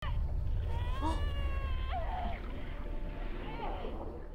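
A television soundtrack: a steady low rumbling drone with a creature's high, wavering cry about a second in, lasting about a second, then a couple of shorter cries.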